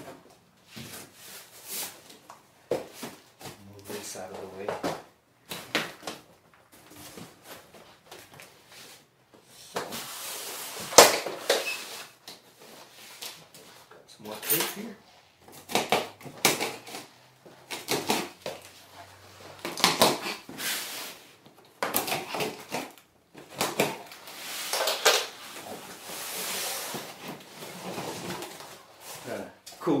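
Cardboard guitar boxes being handled and unpacked: irregular scraping, rustling and knocking of cardboard as the inner box is pulled out of the outer shipping box.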